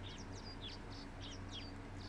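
Birds chirping at a wild African waterhole, a quick run of short, high chirps and whistles, some sliding in pitch, faint over a steady hiss and low hum.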